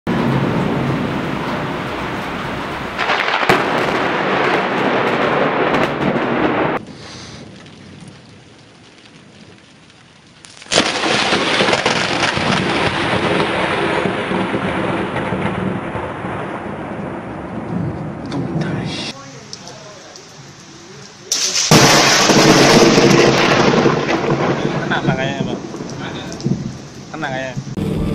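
Thunder from lightning strikes over rain: three loud claps, about three, eleven and twenty-one seconds in. Each one sets in suddenly and rumbles on for several seconds.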